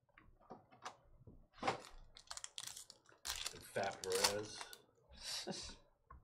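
Trading cards and a foil pack being handled: light clicks, rustles and cards sliding against one another. A brief wordless vocal sound comes about four seconds in.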